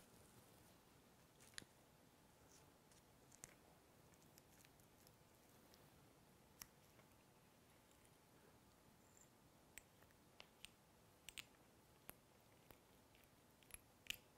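Near silence with faint, scattered small clicks and ticks from fly-tying tools and materials being handled at the vise. The clicks come more often in the second half.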